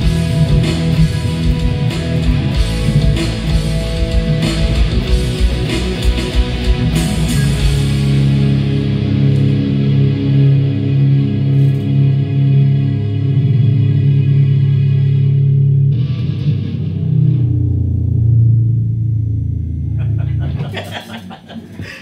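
Electric guitars playing a rock instrumental over a drum beat; about eight seconds in the drums stop and a final low chord is held and rings on, dying away near the end.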